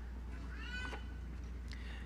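A faint, brief high-pitched cry, rising then falling, shortly after half a second in, over a steady low electrical hum.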